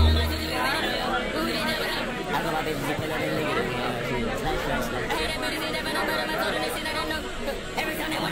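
Several people chatting over one another, with music playing underneath. A loud bass beat cuts out about half a second in.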